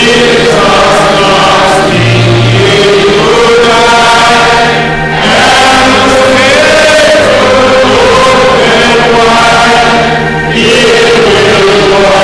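Choir singing a gospel hymn over low sustained notes, with short breaks between phrases about five seconds in and again near ten seconds.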